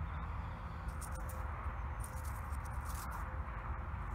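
Handling noise from fingers holding and turning a freshly dug coin: faint rustles and a few small clicks over a steady low rumble.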